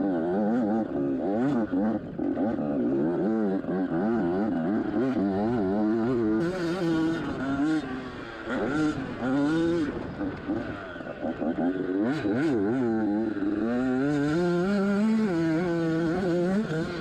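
Yamaha YZ85's single-cylinder two-stroke engine revving up and down continually as the bike is ridden hard along a twisty dirt trail, its pitch climbing and dropping with each blip of the throttle.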